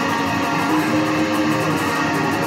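A guitar being played, notes and chords ringing steadily.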